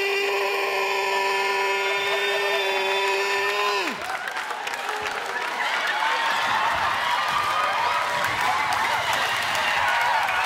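A man's T-Rex roar impression: one long, high, held screech that ends with a falling drop about four seconds in. A studio audience then applauds and cheers, with whoops and yells.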